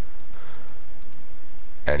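A computer mouse clicking about six times in quick pairs, light and sharp, within the first second or so.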